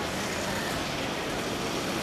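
Steady outdoor background noise, an even rush with no distinct events standing out.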